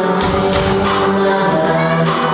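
Live small rock band playing: strummed acoustic guitar, electric guitar and a drum kit with cymbal hits, under a sung lead vocal.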